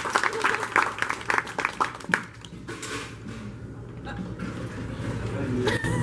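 Audience applauding, dense clapping that dies away about two seconds in, leaving low voices in the hall.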